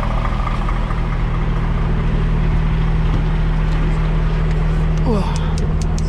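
A diesel engine idling with a steady low hum. Near the end come a few sharp clicks and knocks.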